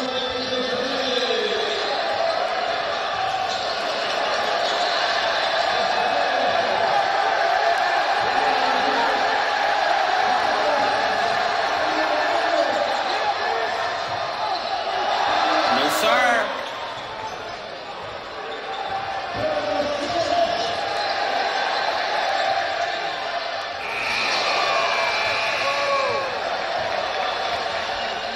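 Noise of a packed gym crowd at a basketball game, with voices shouting over it and a basketball bouncing on the court. The crowd swells to a peak a little past the middle, drops for several seconds, then rises again near the end.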